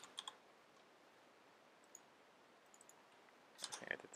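Faint, scattered computer keyboard and mouse clicks: a few at the start, single ones around two and three seconds in, and a quicker, louder run near the end.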